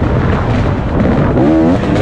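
2017 KTM 250 XC-W two-stroke dirt bike engine being ridden hard on a dirt trail. The pitch wavers up and down as the throttle changes, with a brief rev about one and a half seconds in. Heavy wind and trail rumble sits on the microphone throughout.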